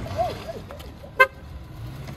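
A single quick tap of a Dodge Charger's car horn about a second in, short and sharp, over low street traffic noise.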